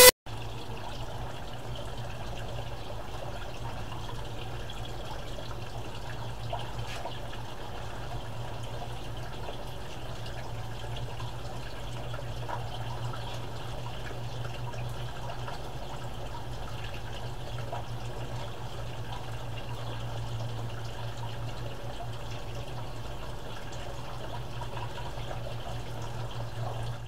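Water pouring from a pipe spout into a galvanized tub, splashing steadily, with a steady low hum underneath.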